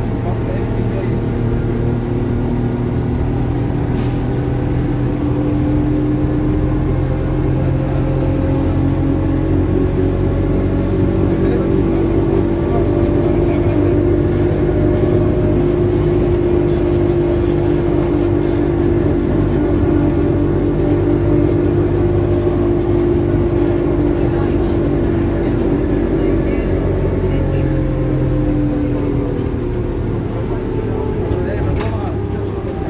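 Ikarus 415T trolleybus heard from inside, under way: the electric traction drive whines with several tones that climb slowly as it gathers speed, hold, then drop near the end as it slows, over a steady low rumble of the running bus.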